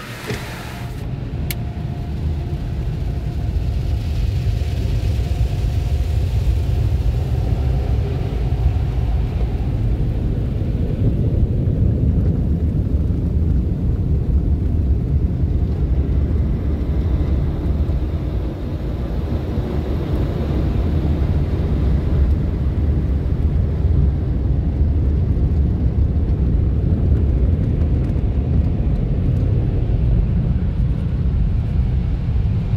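PDQ SurfLine automatic car wash machinery running over the car, heard from inside the cabin as a loud, steady low rumble and rush. It builds up over the first few seconds and then holds.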